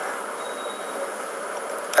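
Steady background hiss of room noise with no speech; a faint brief high tone sounds about half a second in.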